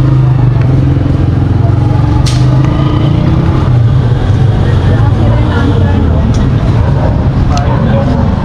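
A loud, steady low motor drone with a few faint clicks.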